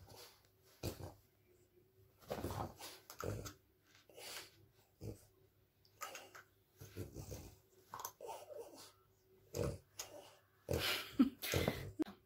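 French bulldog snorting and grumbling in short irregular bursts, with a few low growls, louder near the end.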